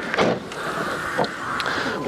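A car's boot being popped open: a click from the latch near the start and another about a second in, over a steady hiss.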